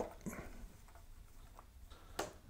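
Faint, scattered small clicks and ticks of a screwdriver working the pickup mounting-ring screws out of an electric guitar's top.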